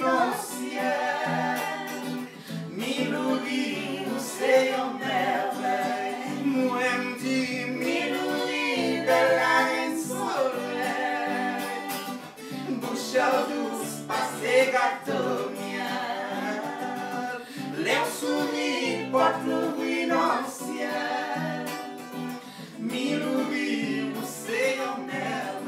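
Acoustic-electric guitar playing a song, with voices singing along, including women's backing vocals.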